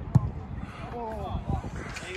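A football kicked hard in a shooting warm-up: one sharp thump just after the start, then a softer thump about a second and a half in, with faint distant voices between.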